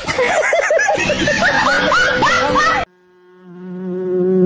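Several men laughing and whooping, cut off abruptly near three seconds in. Then a steady cartoon bee-buzz sound effect swells up.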